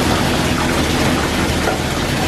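Water running and splashing into a bathtub, a loud, steady hiss.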